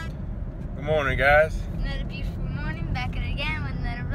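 Steady low rumble of a car driving, heard from inside the cabin. Voices break in over it about a second in and again later.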